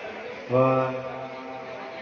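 A man's voice over a public-address system in a large hall, drawing out "one" in a long, steady monotone about half a second in: a microphone sound check.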